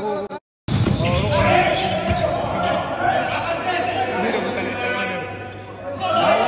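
Basketball bouncing on a hardwood gym floor during a scrimmage, with voices in a large hall. The sound drops out for a moment about half a second in.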